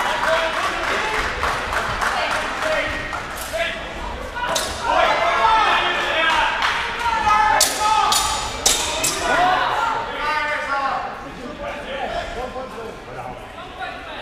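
Steel longswords clashing in a quick run of sharp metallic strikes a little past halfway, with a couple of earlier strikes, amid voices calling out in a large hall.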